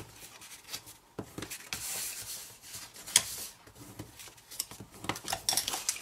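Bone folder rubbed along the score lines of cardstock to burnish them: dry scraping strokes with a few sharp clicks.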